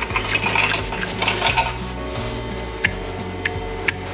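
Hoof knife paring horn from a cow's claw around a sole ulcer, to take the pressure off the lesion: scratchy scraping strokes in the first second and a half, then a few sharp clicks.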